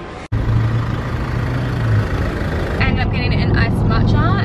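Steady low rumble of a car heard from inside the cabin, coming in suddenly after a brief moment of quieter shop ambience. A woman's voice starts near the end.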